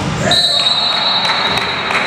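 Referee's whistle: one long steady blast starting about a third of a second in, stopping play in a volleyball rally, just after a ball thud. Players' voices echo in the large gym around it.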